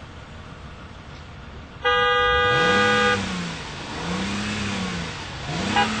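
A Mercedes convertible's car horn gives one long blast about two seconds in. The engine is then revved up and down three times, and short, quick horn toots begin right at the end.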